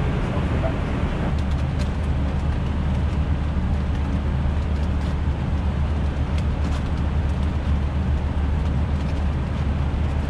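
Steady flight-deck noise of an Airbus A320 in flight: an even rush of airflow and air-conditioning with a low hum, and a few faint clicks.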